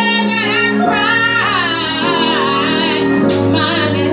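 A woman singing solo into a microphone, her held notes wavering with a wide vibrato, over steady sustained accompaniment chords.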